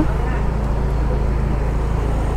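Car engine and road noise heard from inside the cabin while driving slowly, a steady low hum.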